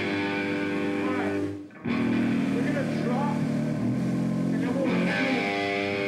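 Live doom metal band playing, with distorted electric guitars and bass holding sustained chords. The whole band stops for a moment about a second and a half in, then comes back in.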